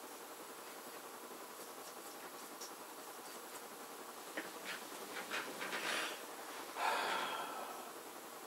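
Pastel stick dabbing and scraping on paper in a handful of short strokes, followed by a louder breathy puff of air.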